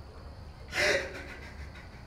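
A man crying, drawing one sharp, gasping sob about a second in.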